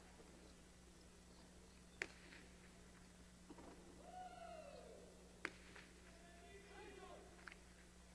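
A jai-alai pelota striking the hard court during a rally: two sharp cracks about two and five and a half seconds in, and a fainter one near the end, with faint squeaks in between, over a quiet steady hum.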